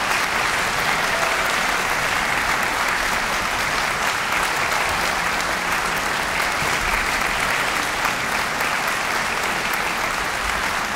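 Audience applauding steadily, a dense, even clapping that neither builds nor fades.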